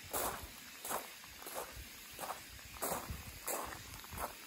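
Footsteps crunching on fine shrine gravel at an even walking pace, about six steps, roughly one and a half a second.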